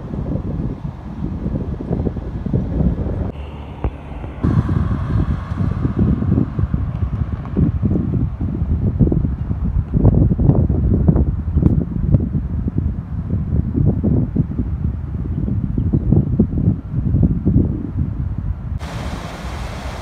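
Wind buffeting the microphone: a loud, gusty rumble. About a second before the end it gives way to the steady hiss and splash of water fountains.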